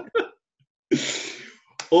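A person's short, breathy exhale about a second in, after a brief pause. Speech starts again near the end.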